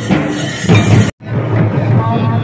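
Santali folk dance music: large drums beaten with sticks and metal hand cymbals clashing. The sound cuts out abruptly for a split second about a second in, then the drumming carries on.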